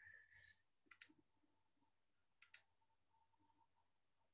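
Computer mouse clicking faintly, two quick double clicks about one second in and about two and a half seconds in, with near silence between.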